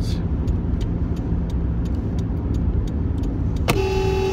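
Steady engine and road rumble inside a moving car's cabin. Near the end a car horn sounds once, a single flat note held for about a second.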